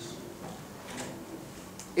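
A pause between a man's sentences: faint room tone with two soft clicks, one about a second in and one near the end.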